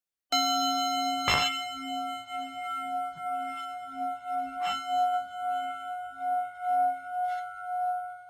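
A singing bowl struck and ringing with a slow, pulsing waver, struck again about a second in and again about halfway through.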